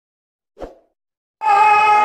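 A short pop from the subscribe-button intro animation, then about a second and a half in, kirtan music cuts in loudly, led by a harmonium playing steady held chords.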